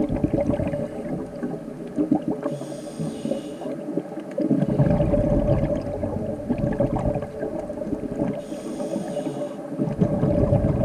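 Scuba diver breathing through a regulator: a long bubbling rush of exhaled air, a short hiss of inhalation about two and a half seconds in, another long exhalation of bubbles, and a second inhalation hiss near the end.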